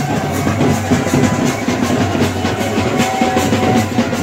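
Drums beating a fast, steady rhythm, about four strokes a second, over the hubbub of a large crowd.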